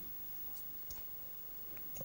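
Faint, scattered clicks of poker chips being handled at the table, a few sharp ticks over quiet room tone.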